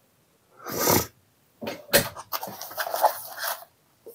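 Plastic protective film crinkling and rustling as a small handheld oscilloscope is lifted out of its foam-lined box, with a sharp click about two seconds in. A short rush of noise comes just before, about a second in.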